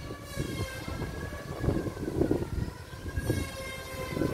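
A sustained siren-like tone made of several pitches held together, sagging slightly in pitch in the second half, over an uneven low rumble.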